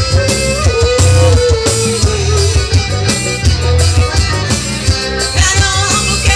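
Live forró band playing with a steady beat: accordion, electric bass, drum kit and electric guitar.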